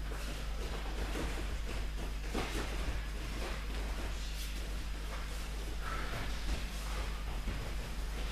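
Steady low hum and hiss of room noise in a training hall, with a few faint soft rustles and knocks from two people gripping and stepping on the wrestling mats.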